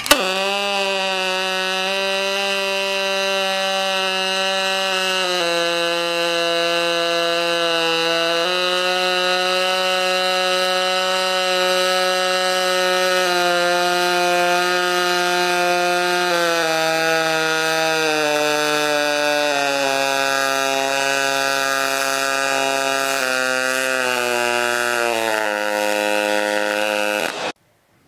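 Pulsed spray-transfer MIG arc on aluminum (4043 wire, HTP Pro Pulse 220 MTS): a very high-pitch, steady buzz of many even overtones. Its pitch steps down and up several times as the thumb slider on the gun raises and lowers the settings. Over the last ten seconds it falls in a series of steps as the slider is pulled back to fill the crater, then it cuts off sharply; the crater still ran too hot and burned through.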